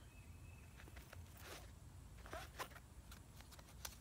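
Faint handling sounds of a small nylon accessory pouch: a few soft rustles and light clicks, scattered through an otherwise near-silent stretch.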